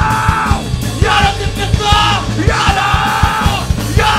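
Hardcore punk band playing live: yelled vocals in short phrases over distorted guitars, bass and fast, busy drums, loud and dense throughout.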